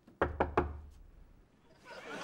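Three quick knocks of a fist on an apartment door, about a fifth of a second apart, followed by a faint fading ring.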